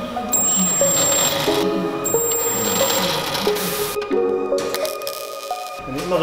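Electronic background music: a melody of held synthesizer-like notes.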